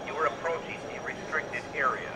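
An IP horn speaker playing a pre-recorded spoken alert message, set off automatically by a security-system event, over the steady murmur of a busy hall.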